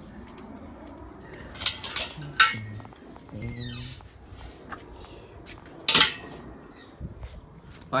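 Several sharp clinks and knocks, the loudest about two and a half seconds in and about six seconds in, with a short voice-like sound between them.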